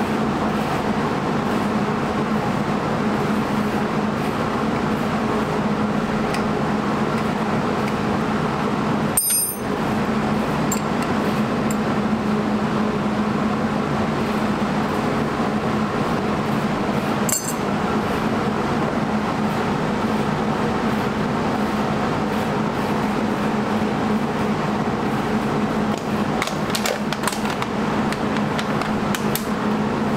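Steady whirring hum, with two sharp metallic clinks, one about nine seconds in and one about seventeen seconds in, and a few lighter ticks near the end, from hands and tools working a brake line loose at a Wilwood brake caliper.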